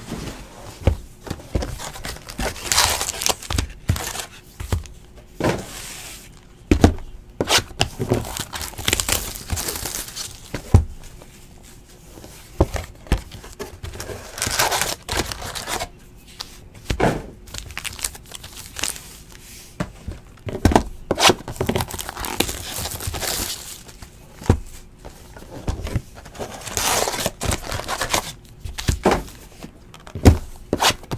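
Cellophane shrink wrap crinkling and tearing as it is stripped off sealed trading-card boxes, in irregular bursts, with occasional sharp knocks of the card boxes being handled on the table.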